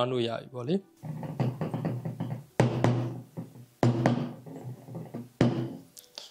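A man talking over background music.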